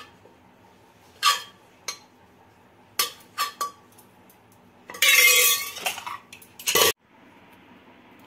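Steel spoon clinking against a steel bowl and the pressure cooker while boiled bottle gourd is scooped out: a few separate clinks, then a longer, louder metal scraping clatter about five seconds in, and one last clank just before the sound cuts off.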